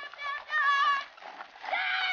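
Hoofbeats of Camargue horses and a bull galloping on a dirt track, with loud high, wavering cries over them, the strongest about half a second in and another near the end.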